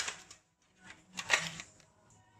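Eggs being cracked over a stainless-steel mixing bowl: short clicks and taps of shell on metal right at the start and again a little past a second in.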